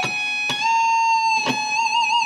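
Electric guitar playing a slow lead line of single held notes. A short note is followed by one that slides up slightly into its pitch and sustains. The same pitch is then picked again, and a wide vibrato sets in on it near the end.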